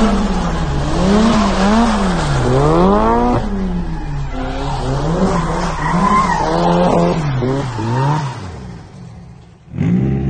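A car engine revs up and down over and over, about once a second, as the car drifts, with tyre skidding noise beneath it. The sound fades out near the end.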